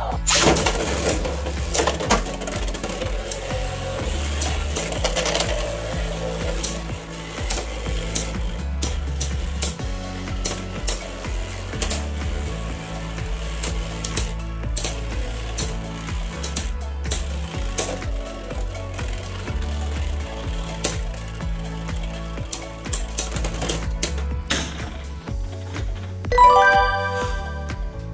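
Background music with a steady beat over the clicking and clatter of two Beyblade X tops, Knight Lance and Wizard Arrow, spinning and striking each other in a plastic stadium. A short pitched jingle sounds near the end.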